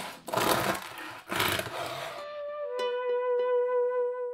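A bread knife sawing through the crisp crust of a sourdough loaf in two crackly strokes. From about two seconds in, a held musical note takes over, steps slightly lower in pitch and rings on.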